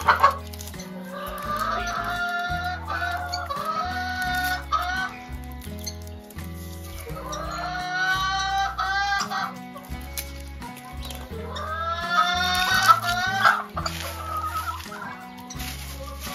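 Chickens clucking and calling in three bouts over background music with a steady bass line.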